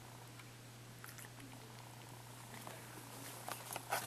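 A house cat purring softly while being petted, with a few rustles and knocks near the end as fur brushes against the microphone.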